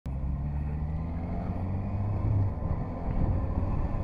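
Motorcycle engine running on the move, a steady low rumble whose pitch shifts slightly about two seconds in.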